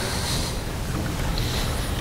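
Steady, even hiss of background noise in a large room, with no distinct events.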